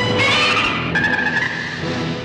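A long, rasping screech of a giant monster from a 1960s Toho kaiju film soundtrack, with a high held cry in the middle, over background music.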